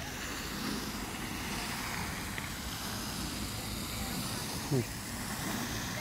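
Steady outdoor background noise, an even rushing haze like distant traffic or wind, with a single short spoken word near the end.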